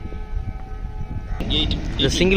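Low outdoor rumble with a faint steady hum. A man's voice starts about one and a half seconds in.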